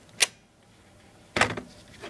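Plastic clicks of a Dell XPS L501X laptop's battery release latches and battery pack as the battery is unlatched and lifted out of its bay. There is one sharp click near the start, then a louder short clatter of clicks and knocks about a second and a half in.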